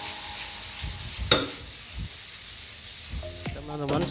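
Vegetables sizzling in a frying pan over a gas flame as they are stirred and tossed, with one sharp clack about a second in.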